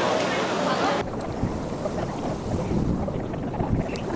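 Crowd chatter for about a second, then an abrupt cut to wind buffeting the microphone, an uneven low rumble over open water.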